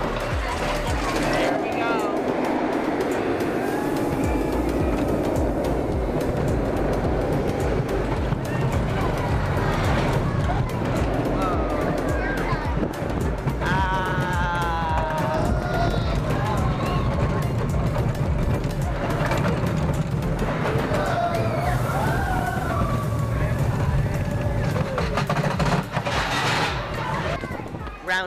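Roller coaster ride heard from a rider's handheld camera: steady rumble of the train on the track and wind on the microphone, with riders whooping and shouting about halfway through, under background music.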